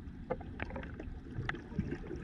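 Underwater ambience picked up through a submerged camera housing: a steady low rumble of moving water, with scattered, irregular faint clicks and crackles.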